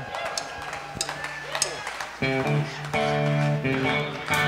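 A live band's electric guitar comes in about two seconds in with held, ringing chords, after a quieter stretch of room noise and scattered clicks.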